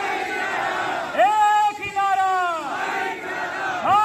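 A call-and-response slogan chant: a man shouts a slogan through a microphone and loudspeakers, and the crowd shouts back in between. One long amplified shout comes about a second in, the crowd answers, and the next shout starts near the end.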